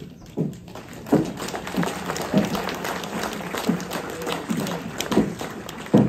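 Audience applauding, a dense patter of hand claps, with a few voices calling out through it.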